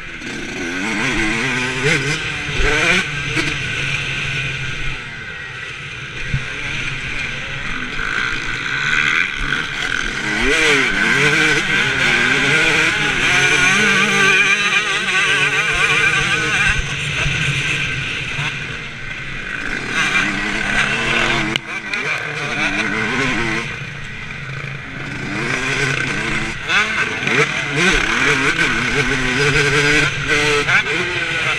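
Motocross bike engine heard close up from a helmet-mounted camera, revving up and down over and over as the rider opens and closes the throttle and shifts gears along a dirt track. The engine eases off for a few seconds about two-thirds of the way through, then picks up again.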